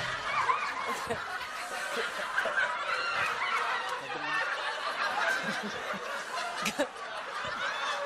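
Several people laughing and chuckling.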